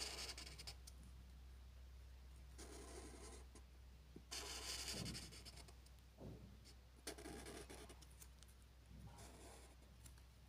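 Faint scratchy strokes of a felt-tip marker drawn across a smooth white surface: about five separate lines, each under a second or so, with short pauses between them.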